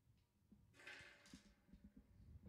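Near silence: faint room tone, with a brief soft rustle about a second in and a few faint clicks.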